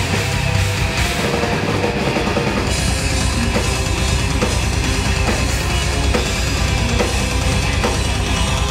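Heavy metal band playing live: distorted electric guitars, bass guitar and a drum kit, loud and continuous, with a steady drumbeat.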